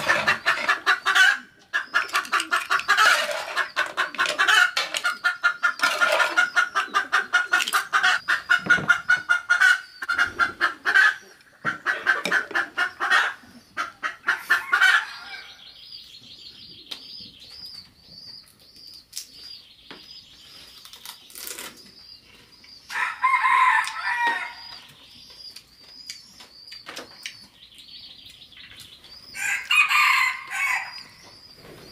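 Chickens clucking and a rooster crowing, loud and almost continuous through the first half, then in shorter bursts about two-thirds of the way in and at the end. A steady high trill runs underneath the second half.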